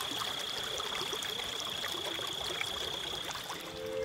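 River water running and lapping at a rocky bank, an even steady rush. A thin steady high tone runs along with it and stops near the end.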